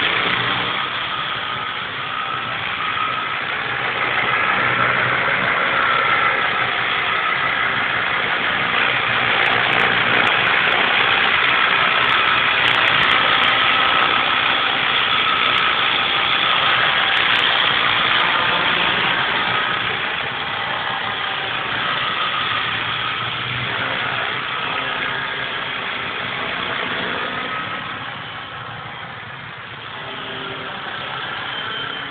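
Multiplex FunCopter electric radio-controlled helicopter in flight: a steady whine from its motor and rotor blades, wavering in pitch as it manoeuvres. It gets louder as the helicopter comes in low and close, then fades as it climbs away near the end.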